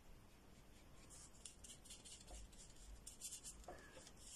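Faint strokes of a paintbrush laying gouache on paper: a run of short, soft brushing sounds starting about a second in.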